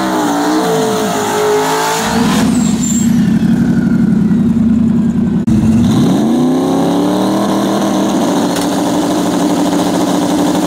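Drag-car engines at the starting line: revs waver, then are held at a loud, steady high rpm until a sudden cut about five and a half seconds in. Another engine then revs up and holds steady at high rpm while staged.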